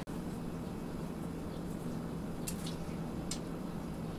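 Lemon juice squeezed by hand dripping into a stainless steel bowl: a few faint soft ticks around the middle of the clip over a quiet steady low room hum.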